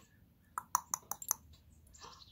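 A quick run of several short, sharp clicks, all within less than a second, starting about half a second in.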